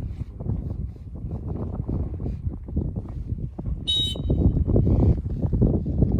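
Wind rumbling on the microphone, with one short, shrill blast of a dog-training whistle about four seconds in, the stop signal to a retriever running a blind.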